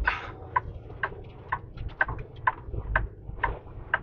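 Truck turn signal clicking steadily, about two clicks a second, over the low rumble of the truck's engine, heard inside the cab.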